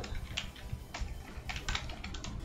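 Computer keyboard typing: a few separate keystrokes, then a quick run of four near the end.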